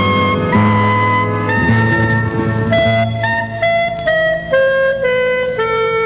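Clarinet playing a slow melody of held notes over an orchestral accompaniment with sustained low notes, the line stepping downward to a long held note in the last seconds.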